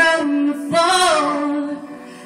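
A woman singing long held notes into a microphone: one sustained note, then a second that rises at its start about a second in and fades out near the end.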